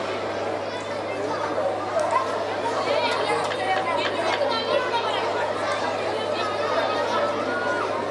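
Several people's voices chattering at once, over a steady low hum.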